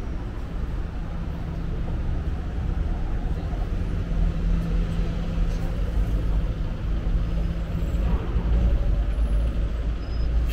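Busy city-street traffic: a steady low rumble of buses and cars on the road, with a low engine hum standing out for a few seconds in the middle.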